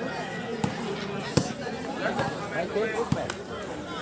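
Volleyball being struck by hand during a rally: three sharp smacks, the loudest about one and a half seconds in, over background voices from the crowd.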